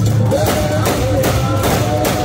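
Adowa funeral music: a woman sings through a microphone while drums beat steadily behind her.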